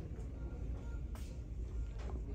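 Store background with a low steady rumble and a single faint click about a second in.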